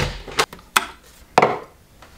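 Door latch and handle clicking as a door is worked, followed by a few lighter knocks. There are four sharp clicks within about a second and a half, and the first is the loudest.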